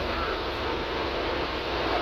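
Transit bus driving, with a steady low rumble of engine and road noise heard from inside the passenger cabin.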